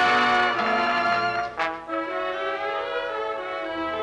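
Radio studio orchestra playing the instrumental introduction to a vocal number. It is louder at first, breaks off sharply about a second and a half in, then carries on more softly with held chords.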